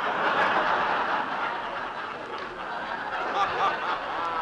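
Studio audience laughing at a punchline, loudest at the start and easing off a little, heard through an old 1941 radio broadcast recording.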